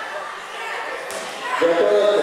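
Overlapping voices echoing in a large sports hall, with one louder voice starting near the end.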